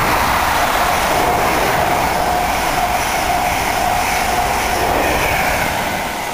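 Locomotive-hauled Mark 3 passenger train running through the station at high speed: a loud steady rush of wheels on rail with a steady whine, easing off near the end as it passes.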